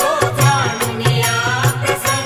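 Marathi Vitthal bhajan: a male voice singing a long, wavering devotional line over a steady beat of percussion strokes.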